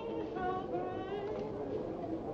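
Singing with wavering, vibrato-laden notes over background music, at a moderate level.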